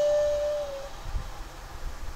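A woman's voice holding one long sung note that stops just under a second in, followed by low rumbling handling noise.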